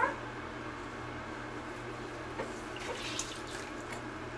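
Faint water sounds of a wet washcloth being used on a baby in a small bathtub, with soft splashes and wiping around three seconds in, over a steady low hum.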